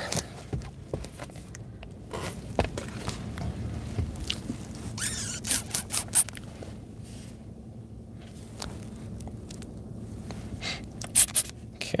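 Handling noises inside a parked car as a laptop is got out and opened: scattered scrapes, rustles and sharp clicks, with a cluster about five seconds in and another near the end, over the steady low hum of the car.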